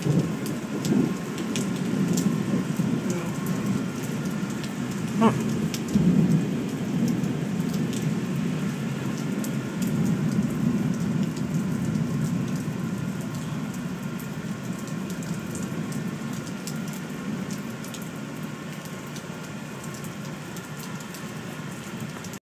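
Heavy rain pouring steadily, with sharp drop hits close by. A low rumble of thunder swells several times and slowly eases off toward the end.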